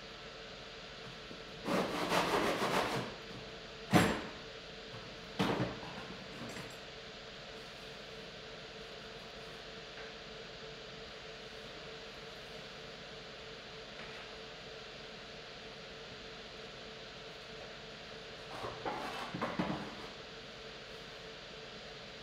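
Electric pottery wheel running with a steady hum while wet clay is worked on it by hand: two spells of clay rubbing under the hands, about two seconds in and again near the end, and a sharp knock about four seconds in with a smaller one soon after.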